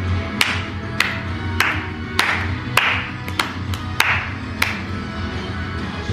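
Eight hand claps in a steady beat, a little under two a second, over upbeat music playing from the TV.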